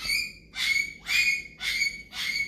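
A high squeaking or squawking sound repeating steadily about twice a second, each squeak short with a sliding start.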